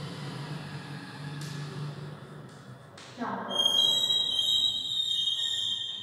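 Chalk on a blackboard: a few light taps and scratches of writing, then from about three and a half seconds in a loud, steady, high-pitched squeal as the chalk squeaks along the board for over two seconds.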